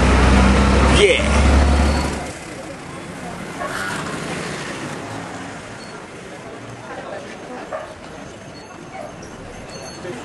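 Loud low rumble for about two seconds that then drops away, leaving quieter city street background noise with faint voices.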